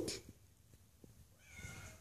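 Kitten meowing. The tail of a loud meow falls away right at the start, and a faint, higher mew follows about a second and a half in.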